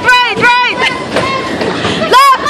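A child squealing in a quick run of short high cries that rise and fall in pitch, about four a second, over the steady running noise of bumper cars on the rink.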